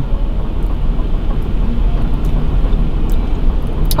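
Steady low rumble and hiss inside a parked car's cabin, with a few faint clicks.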